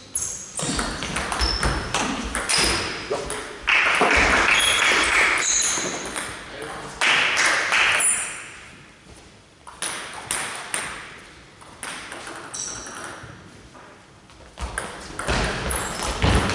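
Table tennis ball clicking off the rackets and table in quick strokes during rallies. A loud burst of voices comes about four seconds in, between points.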